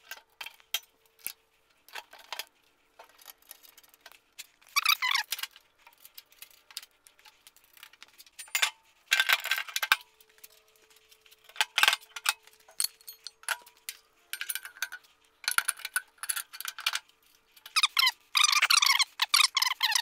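Hand tools working bolts on a steel motorcycle scissor lift as a wheel chock is bolted on: scattered metal clicks and clinks, with several short squeaky runs of tool noise.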